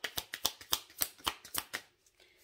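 A deck of oracle cards being shuffled by hand: a quick run of crisp card snaps, several a second.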